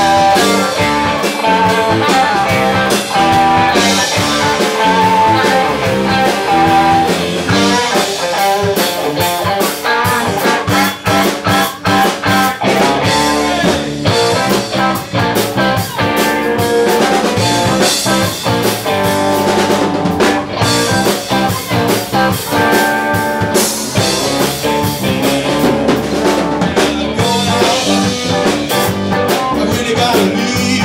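Live blues-rock band playing an instrumental stretch: two electric guitars, a single-cutaway Les Paul-style and a Stratocaster-style, with electric bass and a drum kit keeping a steady beat, and held melodic lead notes over the band.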